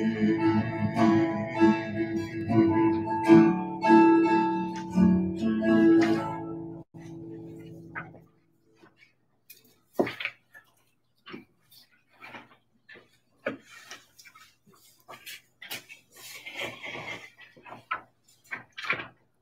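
Acoustic guitar playing the closing bars of a song, ending about seven seconds in and dying away. Afterwards there are scattered light knocks and shuffles in a quiet room.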